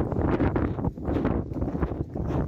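Wind buffeting the microphone in gusts, a low rumble that keeps swelling and dipping.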